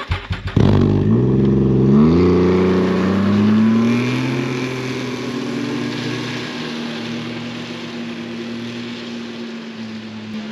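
A snowmobile engine catches about half a second in after a brief cranking, revs up as the sled pulls away, then settles to a steady engine note that slowly fades as it drives off down the trail.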